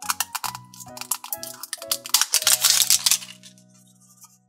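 Plastic Mashems blind capsule being twisted and unwrapped by hand: a quick run of clicks and crackles that peaks about two to three seconds in, then stops. Background music plays under it.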